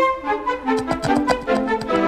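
Orchestral cartoon score with brass playing a quick run of short, clipped notes and sharp hits.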